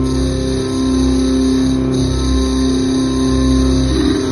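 Loud live music over a concert sound system: a steady held chord with deep bass that swells in and out every second or so.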